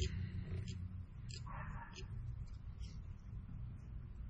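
Faint clicks and soft rustling of hands handling silicone skirt material and thread at a jig-tying vise, over a steady low hum.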